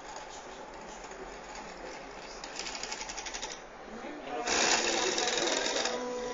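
Small electric motors of an Arduino-controlled model warehouse carriage running as it loads an object: a rapid, evenly spaced ticking about halfway through, then a louder, steady mechanical buzz from about three-quarters through.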